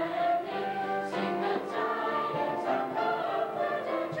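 Children's school choir singing together, many voices holding sustained notes.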